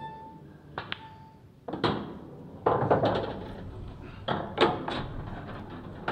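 Pool balls in play: sharp clicks of the cue tip on the cue ball and of ball on ball about one and two seconds in. Then, from about halfway, a rattling roll with several knocks as a potted ball drops into a pocket and runs away under the table.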